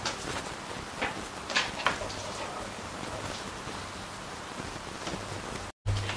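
Bare hands pressing and smoothing a soft ground-meat and stuffing mixture in a foil loaf pan: faint, soft squishing and rustling, with a few brief louder scrapes in the first two seconds. The sound cuts off abruptly near the end.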